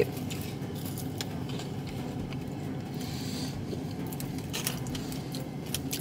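Steady low hum of a car's cabin, with a few faint crunches and paper-wrapper rustles as a person chews a seasoned Taco Bell french fry.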